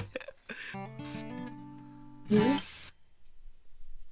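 Ibanez acoustic-electric guitar played briefly: a sharp click right at the start, then several notes ringing together for about a second and a half, ending in a short strum, then quiet for the last second.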